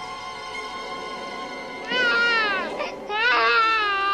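Newborn baby crying: a falling wail about two seconds in and a second wail about a second later, over soft sustained film music.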